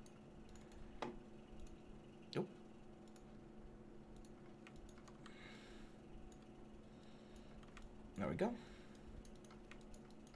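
Faint, scattered clicks of a computer keyboard and mouse being worked, over a steady low electrical hum.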